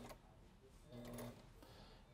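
Sailrite Ultrafeed LSC walking-foot sewing machine, faint, running a few slow stitches, its motor humming briefly about a second in.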